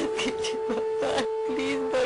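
A woman sobbing in short, gasping bursts over a sustained note of background music.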